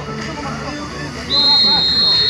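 A referee's whistle blown once, a long steady blast that starts suddenly past halfway, over crowd chatter.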